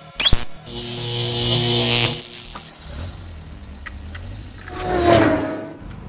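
Speed-booster power-up sound effect: a sharp rising whine that holds at a high pitch for about two seconds and cuts off suddenly. A swelling whoosh follows near the end.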